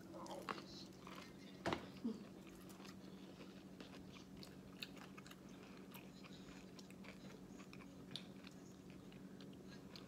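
Quiet chewing of food with small wet mouth clicks, over a steady low hum. There are a couple of brief, slightly louder sounds in the first two seconds.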